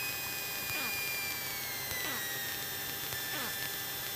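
Quiet hum of the Cessna 172's cockpit intercom line with no one talking, carrying a high whine that slowly falls in pitch over a couple of seconds while the aircraft floats in the landing flare.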